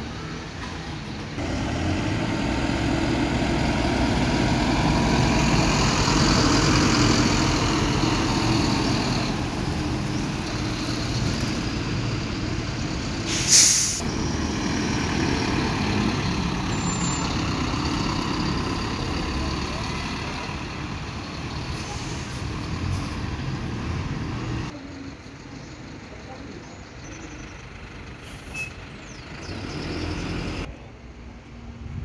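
City bus diesel engines running as buses move through a garage yard, the engine note rising as one pulls away. A short, sharp hiss of air brakes about halfway through is the loudest sound. The engine sound drops off about five seconds before the end.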